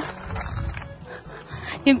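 Low rumbling noise on a handheld phone's microphone during a pause in a woman's talk. Her voice resumes near the end.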